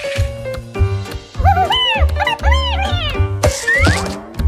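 Cartoon background music with a steady bass beat. Over it, about a second and a half in, comes a string of short, bending, squeaky vocal sounds from the cartoon mouse. A rising glide follows near the end.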